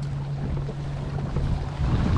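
Wind buffeting the microphone on an open boat on the water, over a steady low hum.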